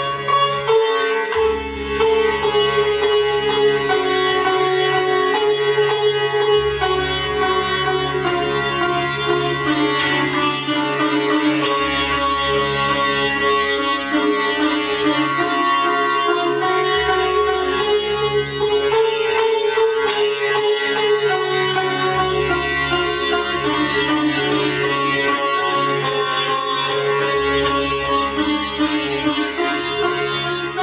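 Sitar music: plucked melody ringing over a sustained drone, with a low bass note that comes and goes every few seconds.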